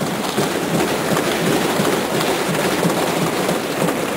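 Many members of a parliamentary chamber applauding together: a dense, steady patter of many hands that eases slightly near the end.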